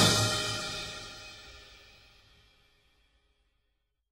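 Closing chord of a swing band arrangement ringing out with a cymbal, dying away within about two seconds.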